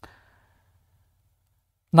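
A short, faint exhale right at the start, then near silence until a man starts speaking at the very end.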